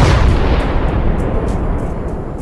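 Cartoon explosion sound effect: a sudden loud blast at the start that dies away into a fading rumble over about two seconds.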